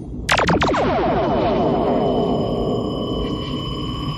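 Synthesized cartoon sound effect of a magic portal opening: a sudden burst of steeply falling sweeps about a third of a second in, then a long cascade of slowly descending tones over a steady high ringing tone.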